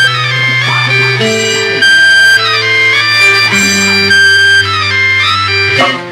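Instrumental introduction of a recorded Latin song: a melody of sustained, reedy notes stepping from pitch to pitch over a steady bass line.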